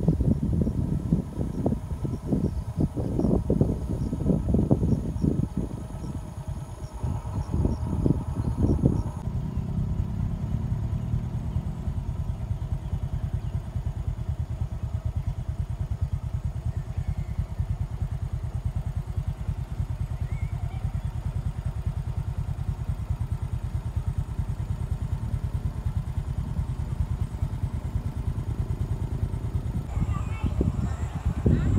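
Wind buffeting the microphone in irregular gusts for the first nine seconds or so, then a steady low rumble for the rest.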